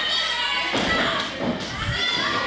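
Heavy thuds of wrestlers' bodies hitting the ring mat, starting about halfway through, amid crowd voices.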